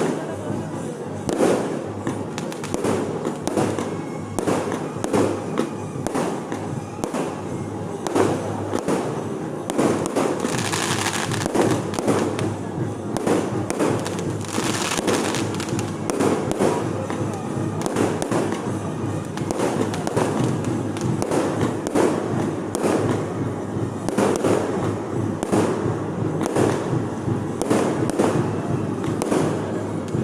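Aerial fireworks going off in a rapid, continuous string of bangs and crackles, with a stretch of denser crackling in the middle.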